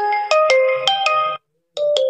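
Tecno Spark 10C smartphone's speaker playing a short sample of its ringtone tune while the volume sliders are moved. It is a quick melody of clear stepping notes that breaks off about a second and a half in, then starts again near the end.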